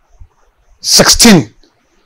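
A man's voice: one short, loud, explosive vocal burst about a second in, starting with a hiss and ending in a voiced sound that falls in pitch.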